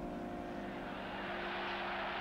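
A sustained piano chord from the background score dying away, over a low, steady wash of noise that grows slightly louder.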